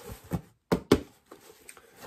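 Cardboard shipping box being handled: a few short knocks and scrapes, the two sharpest close together about a second in.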